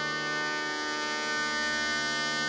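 Shehnai holding one long, steady note over a continuous drone.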